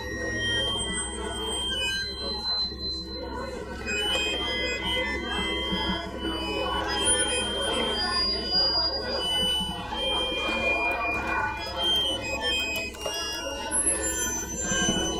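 Live experimental electroacoustic music: accordion played with a sampler, effects and Deluge units, with many short, high held tones starting and stopping over a steady low drone.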